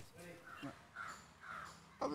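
A bird calling faintly outdoors: three short calls about half a second apart.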